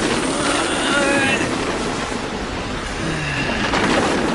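Film sound effects: a loud, steady rumbling rush, with a young man's strained groan through clenched teeth.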